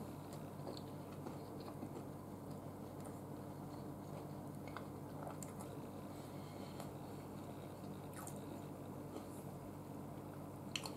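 Faint chewing of a mouthful of fried chicken sandwich: soft, scattered mouth clicks over a steady low hum.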